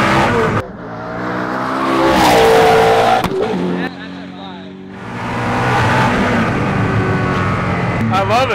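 Hennessey Venom F5's twin-turbo V8 running hard at speed, its pitch climbing as it pulls. The sound cuts off abruptly twice and builds back up towards the end.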